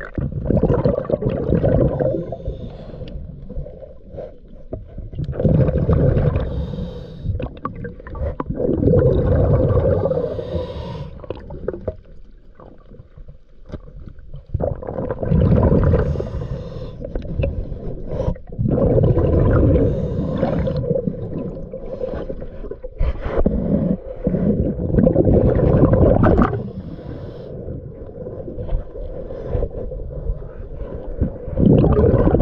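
Underwater breathing of a diver through a regulator: exhaled air bubbles gurgling in surges of about two seconds, every four to five seconds, with quieter inhales between.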